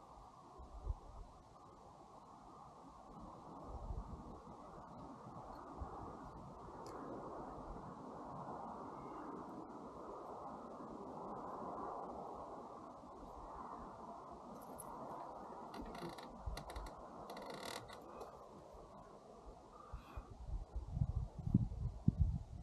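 Faint wind blowing, a low rushing noise that slowly swells and fades, with a few small clicks in the second half.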